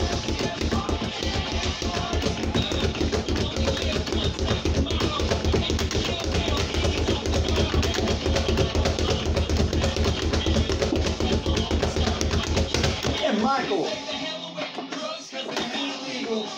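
Background song with vocals, over the fast, continuous drumming of a leather speed bag being punched, which stops about three seconds before the end.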